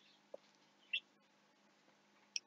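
Nearly quiet room with a faint steady hum and two faint short clicks, one about a third of a second in and one about a second in.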